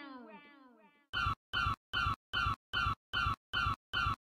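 A falling, pitched, voice-like sound fades out in the first half-second. After a short silence, a short steady-pitched sample repeats eight times, evenly spaced at about two and a half a second, as part of an electronic music track.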